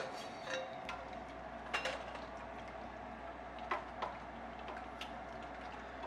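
A few faint, sparse clicks and taps of kitchen utensils against a stainless steel stockpot, over a low steady hum.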